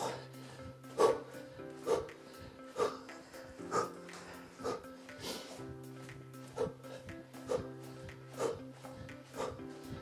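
Background music with steady held tones, over short sharp huffs of breath about once a second, the forceful exhalations of a man doing mountain climbers.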